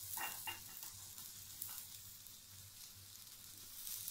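Garlic and green chili paste with spices sizzling faintly in a little oil in a metal kadai on a low flame, with a few light clicks near the start.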